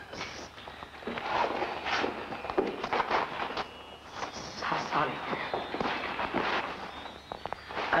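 Voices talking in a film's dialogue, with a few sharp clicks or knocks among the words.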